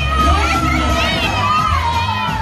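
Three women singing live into microphones, holding long high notes that slide in pitch, over amplified music with a steady bass, with an audience cheering.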